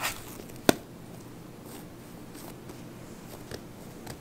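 Hands handling and pressing bread dough on a stone countertop, with one sharp knock less than a second in and a few faint taps later.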